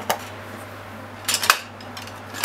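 Kitchenware clinking and clattering: a brief clink just after the start and a quick run of several sharper clinks about a second and a half in, over a low steady hum.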